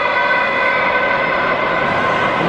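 A steady held tone with several overtones, heard over the crowd din of an indoor stadium, with no break through the two seconds.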